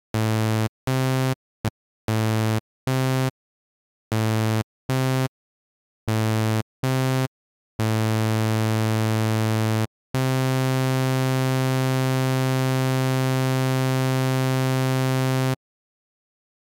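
Software synthesizer (Serum) sounding a low, bright, buzzy tone in short separate notes of about half a second each, with dead silence between them, as presets or notes are auditioned. In the second half, two long held notes follow: one of about two seconds, then one of about five and a half seconds that cuts off shortly before the end.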